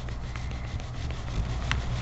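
Paper towel rubbing across a metal nail-stamping plate, wiping off gold polish with nail polish remover to clean it after a poor pickup. There is a short click near the end.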